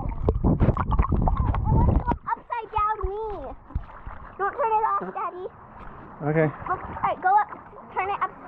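Muffled low underwater rumble with dull knocks from a camera submerged in a swimming pool, cutting off about two seconds in as it breaks the surface. Children's voices, calling and talking without clear words, follow in the open air above the water.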